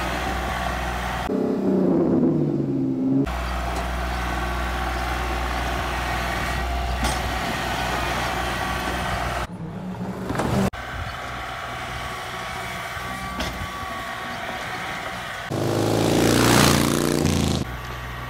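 Kubota L3901 tractor's three-cylinder diesel engine running while working a front-end loader in snow. A falling tone comes in about a second in, and a louder passage with stepping pitch comes near the end. The sound breaks off and changes abruptly a few times.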